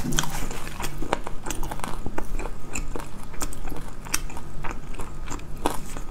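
Close-miked chewing of crispy fried chicken: irregular crunches and crackles, several a second.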